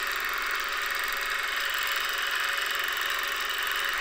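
Longarm quilting machine running steadily as it stitches free-motion curves, an even mechanical hum that doesn't change.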